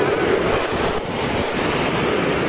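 Wind buffeting a handheld camera's microphone outdoors: a loud, steady rushing noise.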